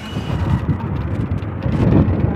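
Low, steady rumble of wind on the microphone mixed with a vehicle's running and road noise, louder near the end.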